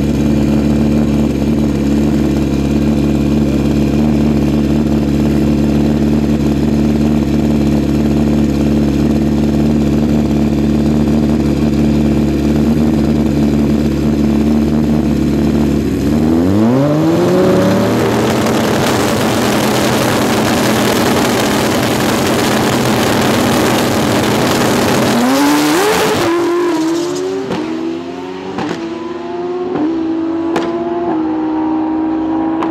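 Two Pro Street drag motorcycles' engines held at steady revs on the starting line, then launching about sixteen seconds in, their pitch climbing steeply as they accelerate away. Near the end the engine note rises again in several steps as the bikes run down the track.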